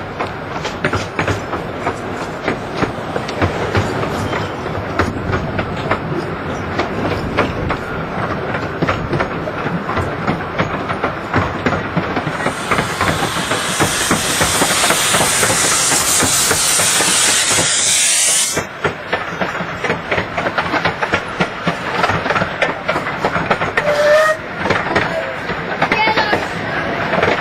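Narrow-gauge steam train running, its wheels clattering over the rail joints. A loud steam hiss from the locomotive starts a little before halfway and cuts off suddenly about six seconds later.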